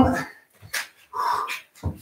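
A man's voice trails off, then comes a short breathy sound. Near the end there is a soft thump as his forearms come down onto an exercise mat while he drops into a plank.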